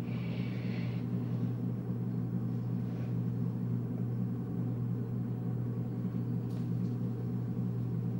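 Steady low hum of a running machine or appliance, even throughout, with a faint brief rustle in the first second.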